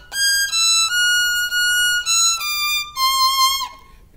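A solo violin playing a slow line of single bowed notes high on the E string in fifth position, each note held about half a second to a second, the line stepping downward before it stops about three and a half seconds in.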